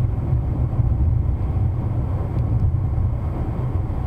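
Steady low rumble of a car driving at highway speed, heard from inside the cabin: tyre and road noise with the engine running underneath.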